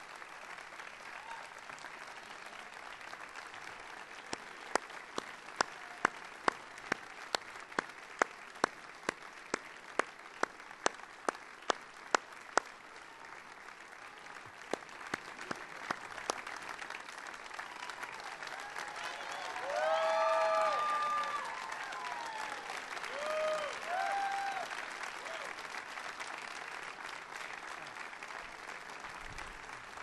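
A theater audience applauding steadily. For several seconds one nearby clapper's sharp claps stand out above it, at about two to three a second. A few voices in the crowd call out around two-thirds of the way through.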